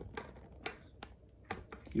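A loose series of about six light clicks and knocks from small hard objects being handled and set down, close by.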